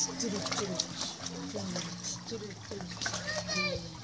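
Children and adults talking and calling over one another in and around a swimming pool, with light splashing of water.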